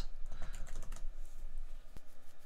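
Typing on a computer keyboard: a run of quick key clicks.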